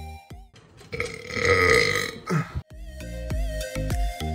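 Electronic music with a steady beat drops out for a loud burp of about a second and a half, ending in a short falling croak, then the music comes back in.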